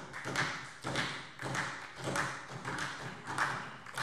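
Many people knocking on their desks in a parliamentary chamber, the German form of applause: a run of even knocks, a little under two a second, over a spread of scattered knocking.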